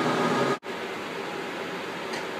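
Steady ventilation or air-conditioning hum and hiss of a projection room. About half a second in it cuts out for an instant, then carries on steady but quieter.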